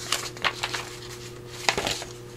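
A sheet of paper rustling and crinkling as it is handled, lifted and turned over by hand. A few short rustles, the loudest one near the end.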